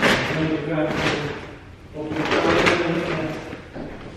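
Modern kitchen drawers being slid open and pushed shut, with a few sharp knocks, under a voice talking.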